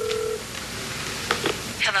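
A telephone ring tone heard through the handset earpiece stops shortly after the start, as the call is answered. Two short clicks follow, and a voice answers 'Hello?' near the end.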